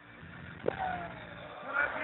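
Lull between songs at a live concert: a sharp knock about a third of the way in, followed by a short falling tone, then a voice over the PA near the end.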